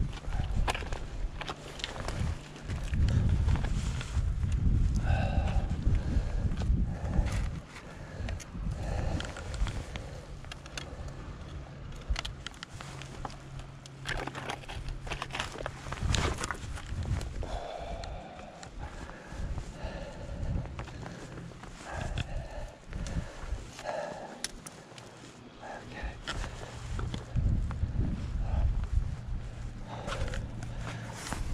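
Footsteps and scuffs on rock with irregular knocks, under a low rumble of wind buffeting the microphone, and a few short breathy vocal sounds.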